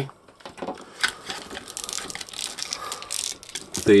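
Plastic joints and armour pieces of a Turtles of Grayskull Donatello action figure clicking and rattling as the arm is twisted round by hand: a dense run of small, irregular clicks.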